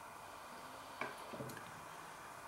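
Faint mouth sounds of chewing a bite of cheeseburger, with one short click about a second in.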